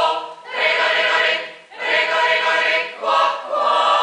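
Mixed choir of men's and women's voices singing a cappella in short phrases, with brief pauses between them.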